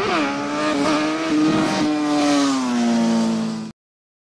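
Logo sound effect: a loud buzzing pitched tone that rises sharply at the start, holds, then slides slowly lower over a hiss, and cuts off suddenly near the end.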